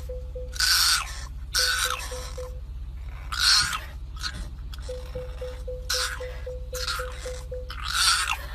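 French bulldog puppy howling in about five short, high cries, spaced unevenly.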